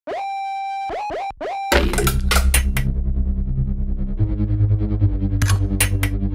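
Hard electronic instrumental beat: a lone synth note glides up and holds, is repeated in two short stabs, then heavy bass and drums come in under it a little under two seconds in.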